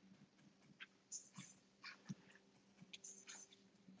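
Near silence: room tone with a faint steady hum and a few soft clicks and rustles.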